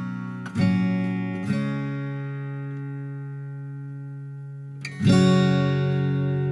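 Martin 000RSGT steel-string acoustic guitar, freshly refretted with stainless steel frets and set up, strummed in chords. Two strums come within the first second and a half, and the chord rings on, slowly fading, for about three seconds before another strum near the end.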